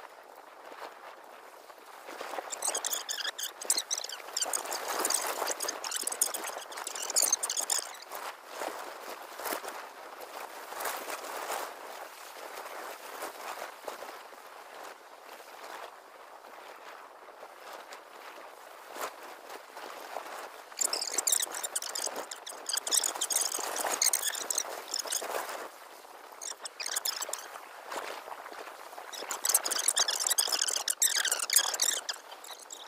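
Leafy tree branches rustling and crackling as they are pruned with loppers and pulled away. The sound comes in two bouts of a few seconds each, with scattered clicks between them.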